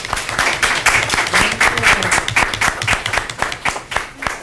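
Audience applauding, a dense patter of many hands clapping that thins out near the end.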